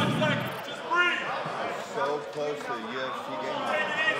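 Indistinct men's voices talking and calling out, with a dull thump right at the start.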